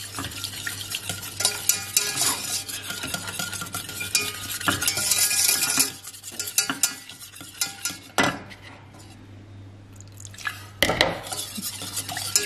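Wire whisk clinking and scraping against a stainless steel saucepan while thick cornstarch-and-water glue paste is whisked, thinned with a little water toward the right thickness. Busy, quick strokes for about the first half, softer strokes for a few seconds in the middle, then brisk again near the end.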